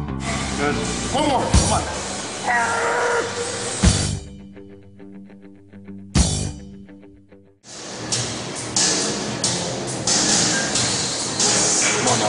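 Background music over an edit, with a few sharp hits in the first half. It dips almost to nothing about seven seconds in, then comes back louder and denser.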